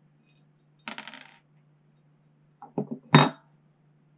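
A black plastic cover plate set down on a wooden desk: a short scrape about a second in, then a quick clatter of knocks near the end, the last one loudest.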